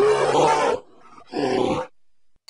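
Bear roar sound effect, heard twice: a longer roar, then a shorter one starting just over a second later.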